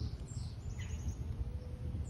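Outdoor ambience: a few short, high bird chirps, about four, scattered over a steady low rumble.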